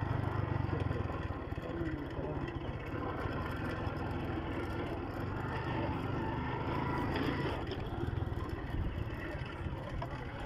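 Honda motorcycle engine running steadily while the bike is ridden.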